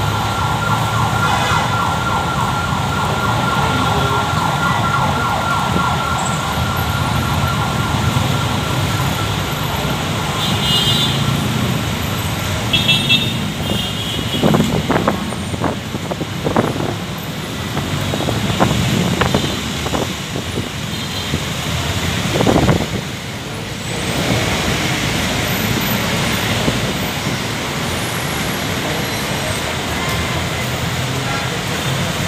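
Busy city road traffic, with vehicles running and passing in a continuous noise. A steady high tone sounds through the first several seconds and fades, there are a few short high beeps, and scattered sharp knocks come in the middle.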